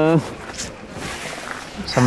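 Conversation: a held word from a man's voice ends just after the start, followed by a pause of low, even background noise, and a voice starts again near the end.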